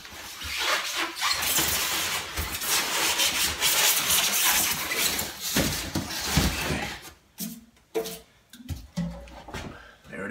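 Plastic packing wrap and cardboard rustling steadily as a dust collector's blower unit is worked out of its shipping box, followed by a few scattered bumps and knocks in the last three seconds.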